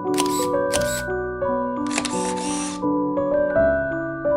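Instrumental background music, a slow melody of held notes, with a camera-shutter sound effect laid over it: two quick shutter clicks in the first second, then a longer shutter sound about two seconds in.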